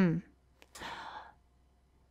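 A voice making a short 'hmm' that falls in pitch, then a breathy sigh lasting about half a second.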